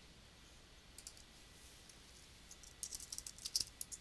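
Faint computer keyboard typing: one click about a second in, then a quick run of keystrokes over the last second and a half as a short subject line is typed.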